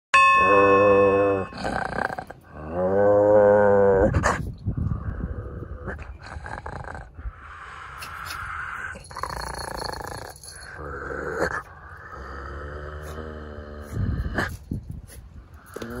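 A dog growling and grunting at close range, after a short steady tone at the very start.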